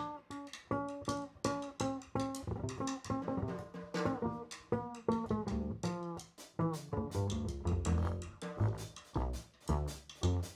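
Live jazz from a small combo: electric guitar playing quick plucked lines over walking upright double bass, with drums accompanying.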